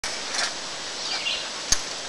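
Steady outdoor background hiss with a faint chirp a little past a second in, and one sharp click near the end.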